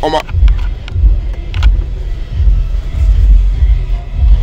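Low, uneven rumble inside a passenger van's cabin, with a brief word of speech at the start.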